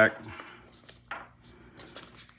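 Faint handling sounds on a wooden tabletop as a hand moves a pen on its cloth: a light knock about a second in and a small click near the end.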